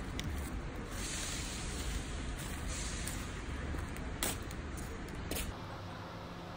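Steady outdoor background noise with a low rumble like distant traffic, with a couple of brief clicks or knocks around four and five seconds in. The background changes abruptly a little past five seconds.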